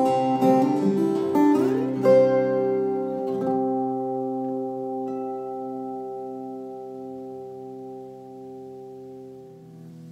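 Fingerstyle acoustic guitar amplified through an Elite Acoustics A2-5 acoustic monitor, EQ flat with a little reverb: a few last plucked notes, then a final chord left ringing and slowly dying away.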